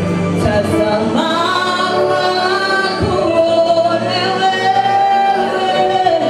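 A woman singing a Swahili gospel worship song live, over a band of keyboards and drums. Halfway through she holds one long note to the end.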